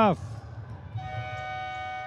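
Sports hall's end-of-match horn sounding a steady, unwavering electronic tone from about a second in: the signal that the futsal match is over.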